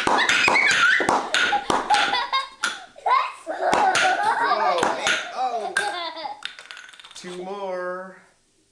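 Children laughing and squealing, with a run of sharp snaps and cracks mixed in over the first few seconds.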